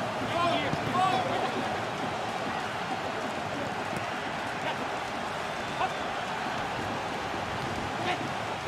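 Steady ambient hiss from the pitch-side microphones of a football broadcast in an empty stadium, with a few faint voices in the first second.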